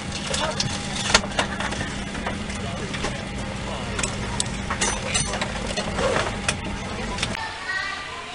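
Inside the cabin of a Boeing 737-800 taxiing after landing: a steady hum from the idling engines, with scattered clicks and knocks and a murmur of passengers' voices. The hum cuts off abruptly near the end, giving way to a quieter hall ambience.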